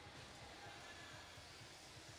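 Near silence: faint, steady background noise of a crowded gym arena.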